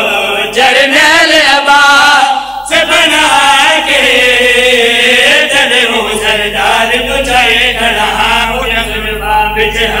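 A group of men chanting a Punjabi noha, a Shia mourning lament, together through microphones, with a brief break about two and a half seconds in.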